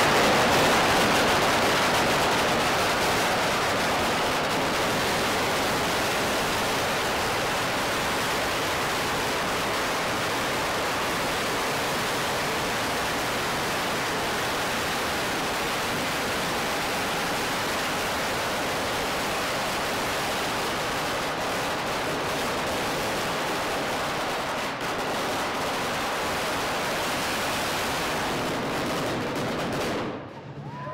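A long string of red firecrackers exploding in a continuous rapid crackle that blurs into one dense rattle. It is loudest in the first seconds, eases slightly, and stops abruptly at the very end.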